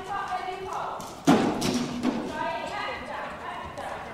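Voices talking, with one sharp thud a little over a second in.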